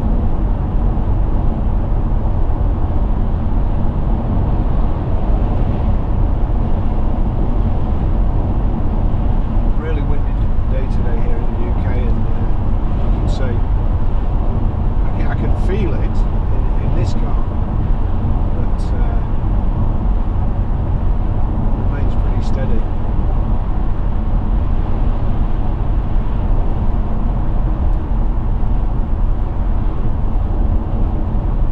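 Steady low road and engine noise inside the cabin of a BMW 730d diesel saloon cruising at motorway speed. A few faint clicks and murmurs come through in the middle.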